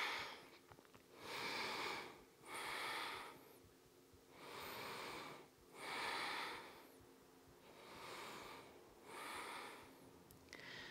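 A woman breathing slowly and deeply, audible inhales and exhales as six soft hissing breath sounds in three pairs, one breath cycle about every three seconds.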